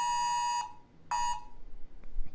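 Smartphone Wireless Emergency Alert tone for an Amber alert: a harsh two-tone attention signal, one long blast that stops about two-thirds of a second in, then a short blast about a second in.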